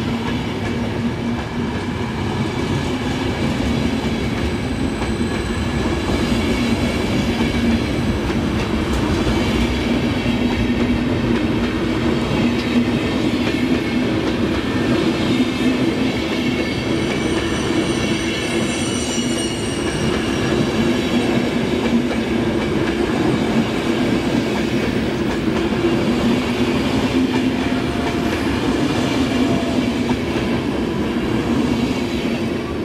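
Passenger coaches of a departing night train rolling past close by: a steady rumble of steel wheels on the rails that grows a little louder over the first several seconds and then holds.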